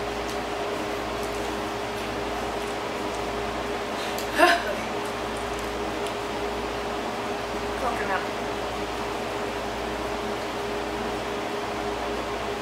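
Steady room hum with a faint constant tone underneath. A woman gives a short murmur about four and a half seconds in, and a fainter one near eight seconds.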